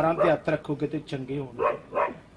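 A man's voice praying aloud over someone in quick, forceful bursts, with a short pause near the end.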